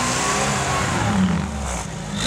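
Off-road 4x4's engine running at a steady level, its pitch rising and then dropping a little past the middle.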